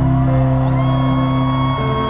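Live pop-rock band music, loud and steady, with a long held note coming in a little under a second in.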